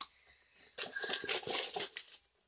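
Foil blind-bag packet crinkling as it is handled and shaken. It starts near the middle and lasts about a second.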